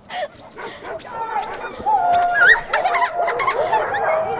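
A pack of dogs giving many overlapping high-pitched yelps and whines, getting busier about a second in.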